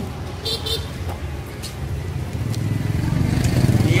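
A motor vehicle engine running close by, a low pulsing rumble that grows louder over the last second and a half.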